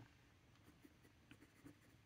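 Faint, scattered scratching of a TWSBI Go fountain pen's medium nib writing on journal paper.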